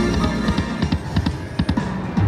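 Video slot machine playing its electronic bonus music during a free-game spin, with a quick run of short clicking tones as the reels spin and stop.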